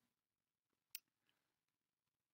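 Near silence, broken by one short, sharp click about a second in.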